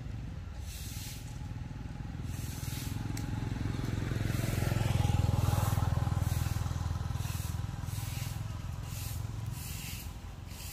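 Low rumble of a passing vehicle's engine, swelling to its loudest about halfway through and then fading.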